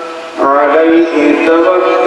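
A man's voice chanting in long, held, melodic notes, with a short break for breath just before half a second in before the line carries on.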